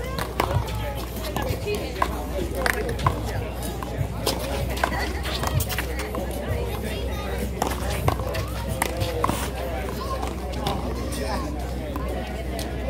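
Sharp smacks of a small rubber handball struck by hand and hitting the concrete wall and court, scattered irregularly through a one-wall handball rally, with voices chattering in the background.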